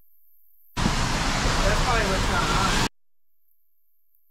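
Loud wind buffeting the camera microphone during a ride, with a voice faint underneath. It starts abruptly about a second in and cuts off suddenly two seconds later.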